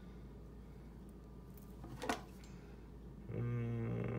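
A single sharp click about two seconds in as an Anderson Powerpole contact is worked into the 30-amp slot of a ratcheting crimper. Near the end a low, steady hum starts, a person humming as he squeezes the crimper.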